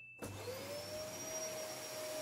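Vacuum cleaner switched on: its motor spins up with a whine that rises in pitch for about half a second, then runs steadily.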